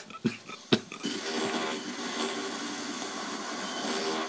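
Two short sharp clicks, then from about a second in a steady hiss of analogue TV static coming through the television's speaker.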